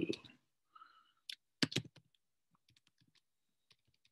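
Sparse key clicks on a computer keyboard as a line of code is typed, with a louder knock about one and a half seconds in.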